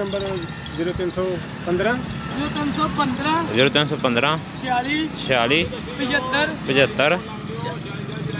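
Men's voices talking over a motor vehicle engine running steadily at idle.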